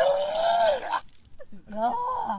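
A person retching and vomiting: a loud, strained vocal heave about a second long, then a shorter one near the end.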